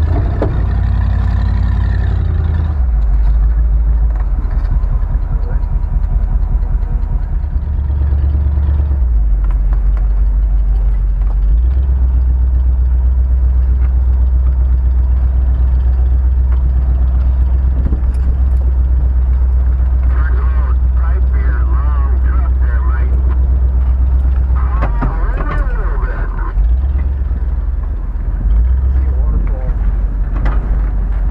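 A 1977 Jeep Cherokee's engine running as the truck drives a rough dirt track, a steady low drone that shifts several times as the throttle changes. Muffled voices come in about two-thirds of the way through.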